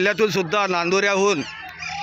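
A man speaking in a loud, drawn-out voice; only speech, no other sound stands out.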